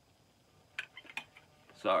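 A few sharp plastic clicks, about a second in, from a cassette tape's clear plastic case being handled and opened.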